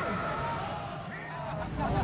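Street ambience of motorcycle and car engines running, with voices from a crowd in the background.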